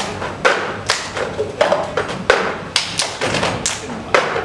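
A group of people slapping, tapping and thumping plastic cups on a table in unison in the cup-song rhythm, about six or seven sharp hits in the four seconds.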